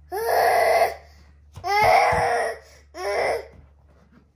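A baby gives three loud, drawn-out voiced shouts, each under a second and rising in pitch at its start, the middle one the longest. A couple of dull low thumps fall under the middle shout.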